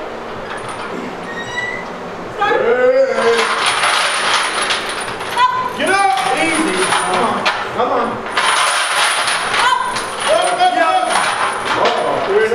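Lifting chains hanging from a loaded squat bar clinking and rattling in two long spells as the bar goes down and back up, under people shouting encouragement from a couple of seconds in.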